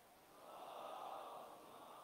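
Near silence in a large hall, with a faint soft rush of noise that swells about half a second in and fades again.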